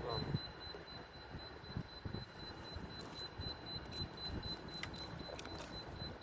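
A faint, thin high-pitched electronic tone, pulsing rapidly and evenly, over a low background hiss, with a couple of faint clicks near the end.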